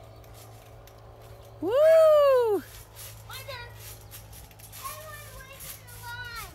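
A loud, drawn-out "woo!" cheer about a second and a half in, its pitch rising and then falling, with faint children's voices around it.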